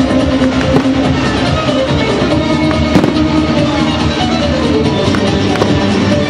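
Fireworks bursting with several sharp bangs, the loudest about three seconds in, over loud continuous music.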